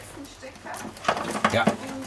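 Wiring harness cables and plastic connectors rustling and scraping as they are pulled through an opening in a car's bare sheet-metal body, under talk.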